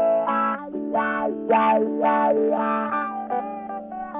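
Electric guitar, a 1984 Japanese Stratocaster, played through a Dunlop Dime Cry Baby From Hell wah pedal into a Fender Mini Tone Master amp. A held low note sits under picked notes, and the tone swells bright and fades back in repeated wah sweeps, about two a second.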